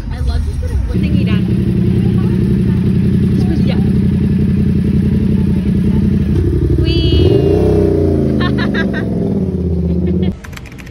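Motorcycle engine idling steadily from about a second in, then revved once about seven seconds in, its pitch rising and falling back to idle.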